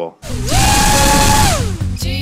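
Four DYS BE1806 brushless motors on a brick-weighted quadcopter, fitted without their retaining C-clips, punched to full throttle: a high whine with loud rushing prop wash rises quickly, holds for about a second, then falls away as the motors spool down.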